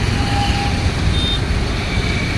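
Busy road traffic noise with a steady low rumble, broken by two short beeps: a lower one about half a second in and a higher one just past the middle.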